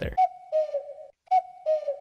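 A cuckoo call sound effect: two falling notes, a higher note then a lower one, sounded twice. It is used as a time-passing transition.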